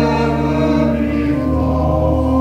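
A slow hymn: sustained organ chords with a strong bass line, changing about once a second, with voices singing along.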